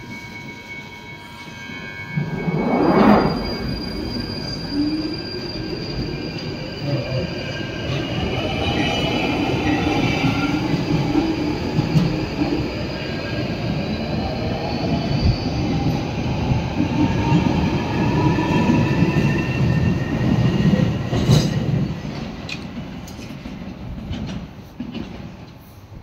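London Underground Northern line tube train pulling out of the station. Its traction motors whine, rising in pitch as it gathers speed, over the wheels' rumble on the rails. There is a burst of noise about three seconds in, and the train fades near the end.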